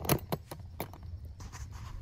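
A couple of sharp clicks, about a quarter of a second apart, then a few fainter ticks from a spring-loaded stainless steel draw latch on a roof top tent shell being handled, over a low steady rumble.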